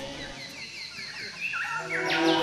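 A bird calling a quick run of short falling chirps, about five a second, for a little over a second.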